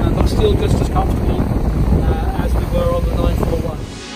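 Wind rushing over the microphone with the low drone of a RIB's twin 200 hp outboards underneath, and a man talking over it. The sound dips away right at the end.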